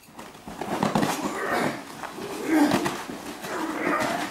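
Staged martial-arts fight: sharp vocal grunts and shouts from the fighters, with a few thuds and scuffs of strikes and feet on the floor.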